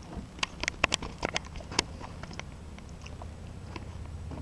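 A run of irregular sharp clicks and ticks, thickest in the first two seconds and sparser after, over a steady low rumble.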